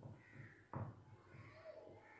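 Crows cawing faintly in the background, a few short falling calls. A soft knock about three quarters of a second in is the loudest sound.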